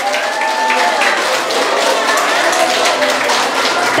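Audience applauding, steady clapping from many hands, with faint voices mixed in.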